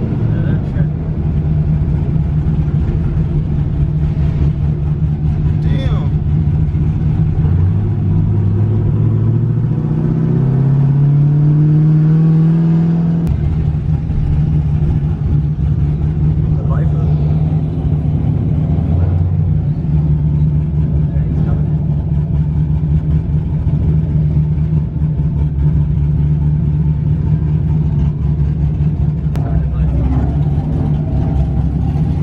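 Car engine heard from inside the cabin, running at low revs, then revving up with a rising note for about five seconds before dropping back and settling into a steady drone as the car rolls along.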